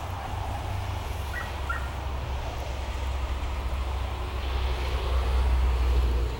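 Steady low rumble and hiss of outdoor background noise, growing louder near the end, with a couple of faint short chirps a little over a second in.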